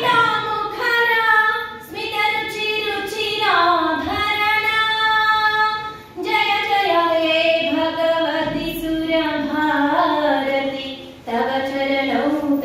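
A woman singing solo and unaccompanied into a microphone, in long held phrases that break briefly for breath about 2, 6 and 11 seconds in.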